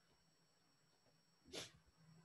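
Near silence, with one short breath noise, a quick sniff or exhale, about one and a half seconds in.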